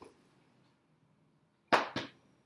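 Near silence: room tone. Near the end a man calls out sharply once.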